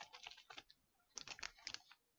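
Faint handling sounds of a hand brushing and pressing on a cloth-topped play mat: two short bursts of light clicks and rubs, the second about a second in.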